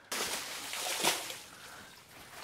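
Water sloshing and splashing as a rope-swung bailing scoop dips into a muddy ditch and throws water out, with a louder splash about a second in.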